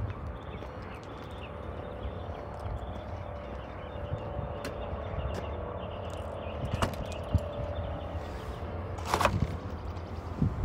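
Low rumble of wind and handling on a phone microphone as the car is walked around, with a faint steady hum through the middle. About nine seconds in comes a sharp clunk as the Honda Insight's trunk lid unlatches and opens.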